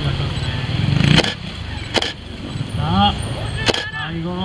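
Trials motorcycle engine revving up and cutting off sharply about a second in. Three sharp cracks follow over the next few seconds, with spectators' voices.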